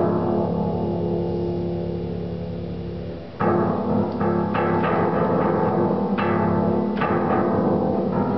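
Low keys of an upright piano pressed in clusters by a macaque's hands and feet. A ringing, unmusical chord fades over the first three seconds. Then a loud cluster strikes a little over three seconds in, followed by irregular further clusters.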